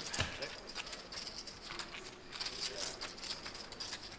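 Clay poker chips clicking again and again as players handle and riffle their stacks, over faint murmured voices at the table.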